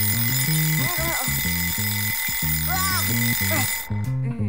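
Cartoon alarm clock ringing steadily and cutting off abruptly just before the end. Under it plays background music with a stepped low melody.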